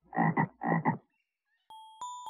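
Cartoon frog croaking twice, each croak a quick double 'ribbit'. A held musical note comes in near the end.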